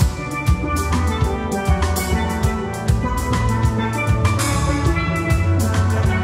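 A steel band playing: many steel pans struck with mallets in a quick, busy tune of ringing metallic notes, with drums and a deep bass line underneath.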